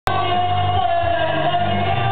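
A man singing karaoke into a handheld microphone over an amplified backing track, holding one long note.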